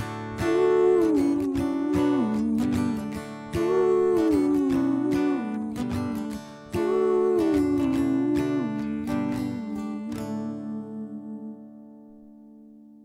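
Acoustic guitar strummed under a wordless vocal melody that is phrased three times, closing a song. A last chord rings out and fades from about ten seconds in.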